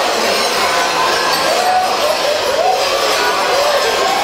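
Many large bells (Rollen) strapped to Rottweil fools' costumes jangling together without a break as the fools jump along, with crowd voices and calls mixed in.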